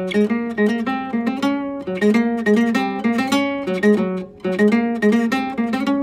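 Nylon-string classical guitar playing a quick line of single plucked notes, fingered in a chromatic-scale position across the D and B strings, with a brief break about four and a half seconds in.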